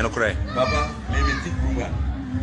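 Voices over background music with a steady, pulsing low beat; a man's speech trails off just after the start, and softer voices carry on over the music.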